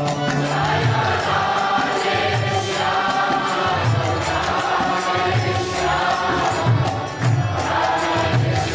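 Kirtan: several voices chanting a mantra together, accompanied by harmonium and violin over a steady percussive beat with low drum-like pulses about twice a second.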